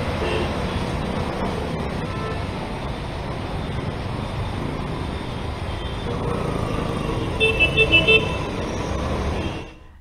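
Road traffic on rain-soaked, waterlogged streets: a steady wash of engines and tyres on wet road. A vehicle horn gives a quick run of short toots about seven and a half seconds in.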